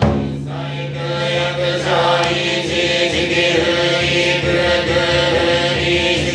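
Group of Shingon Buddhist monks chanting in unison, holding long low notes. The voices thicken into several layered pitches about two seconds in.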